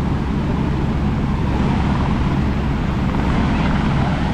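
Ocean surf breaking and washing up a sandy beach: a steady, loud rush with a constant low rumble and hum.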